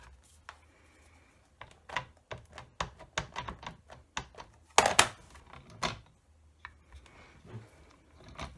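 Plastic-cased ink pad tapped over and over onto a clear rubber stamp held on an acrylic stamping plate: a run of light, irregular clicking taps, with a few louder knocks about halfway through.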